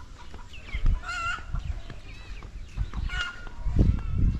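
Chickens calling in short calls, two clearer ones about a second in and about three seconds in, over a low rumble.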